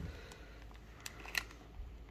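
Foil trading-card packs handled in a hand as they are fanned out, giving a faint rustle and a few light clicks, the clearest about a second and a half in.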